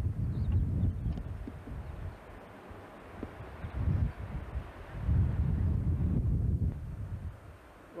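Wind buffeting a camcorder microphone in gusts: a low rumble that swells and drops away several times, with a steady hiss in the lulls.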